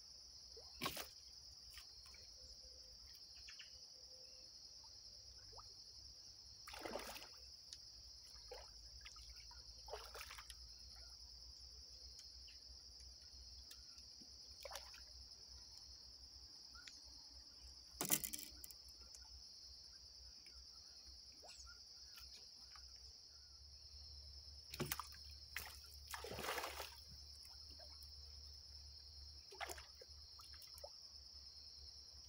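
A steady high-pitched insect chorus, crickets, with a handful of brief soft splashes and swishes, the loudest about 18 s in, as the fishing line and float are lifted from the water and recast.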